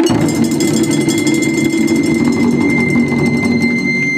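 Ensemble of Japanese taiko drums struck together in a loud, fast, dense roll that starts suddenly and keeps up without a break.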